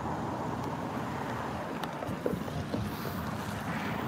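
Steady outdoor background noise: an even low rumble with no distinct events.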